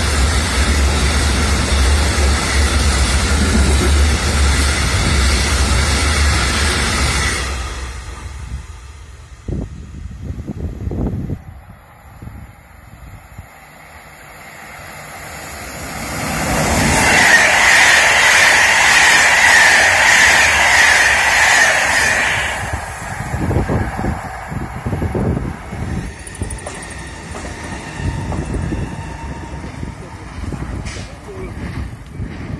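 A freight train of covered hopper wagons passing close, a loud steady rumble of wheels on rail that drops away after about seven seconds. After a quieter gap, an SNCF BB 22200 electric locomotive hauling Corail coaches comes by loudly from about sixteen seconds in, with a high steady squeal over its noise for several seconds before it fades.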